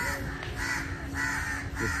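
A bird calling over and over in short calls, about every half second.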